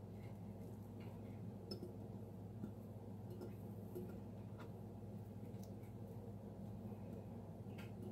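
Faint, sparse clicks and taps of chopped onion pieces dropping into a glass mason jar, a second or more apart, over a steady low hum.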